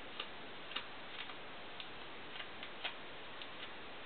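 Faint clicks roughly twice a second, slightly uneven, over a steady hiss: a comb's teeth flicking through the end of a section of hair.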